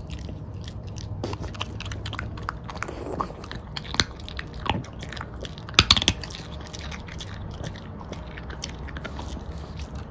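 French bulldog chewing and mouthing something held at its lips, a run of wet clicks and smacks that are loudest about four seconds in and again around six seconds.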